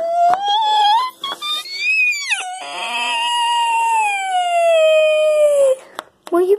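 A child's voice wailing in pretend crying: a wavering cry that climbs to a high peak about two seconds in, then one long wail sliding slowly downward before it breaks off near the end.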